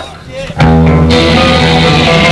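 Live band starting a song with electric guitars and bass. After a brief lull they come in loud about half a second in, and the sound gets fuller in the high end about a second in.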